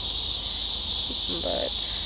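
Steady high-pitched chorus of insects, even and unbroken.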